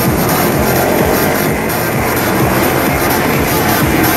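Loud electronic dance music with a steady, driving beat.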